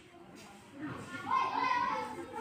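Children's voices, with one high voice calling out, held and loud, through the second half.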